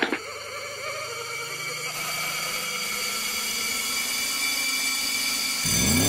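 Cartoon suspense sound effect: a sustained eerie drone of held tones, its low note slowly rising in pitch as it grows louder. A louder sound cuts in just before the end.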